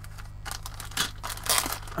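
Clear plastic bag crinkling as hands handle it and work it open to get at the plastic kit sprues inside, in a few short rustles.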